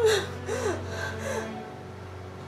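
A woman's short, shaky gasping sobs, three of them in the first second, each falling in pitch, over soft background music that carries on alone afterwards.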